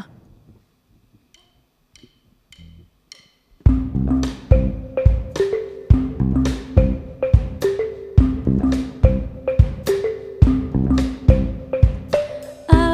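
A drummer clicks her sticks four times as a count-in, then the full band comes in together on an instrumental intro: drum kit, bass, keyboard and electric guitar playing a steady beat with held chords.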